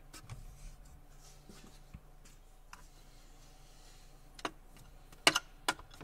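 Mostly quiet, then three sharp clicks and knocks in the last second and a half from a plastic dashboard faceplate being handled, the middle one loudest, over a faint low hum.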